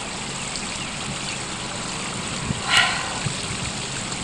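Steady outdoor background hiss, broken about three-quarters of the way through by one short, pitched sound that is the loudest moment.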